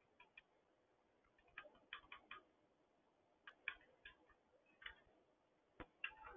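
Near silence with faint, irregular clicks, some in quick clusters of two to four, from someone working a computer's keyboard and mouse.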